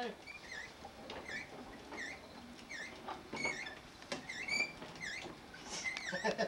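A string of short, high squeaks, roughly one or two a second, unevenly spaced.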